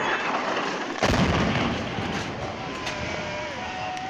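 Airstrike explosion on a building about a second in: a sudden deep boom followed by a long rumble that slowly fades, with people's voices around it.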